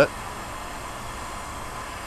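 Electric heat gun running with a steady blowing noise, warming the end of a three-quarter inch hose to soften it before it is slid over a hose barb.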